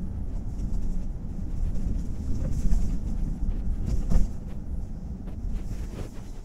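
Car on the move, heard from inside the cabin: a steady low rumble of road and engine noise, with a louder thump about four seconds in.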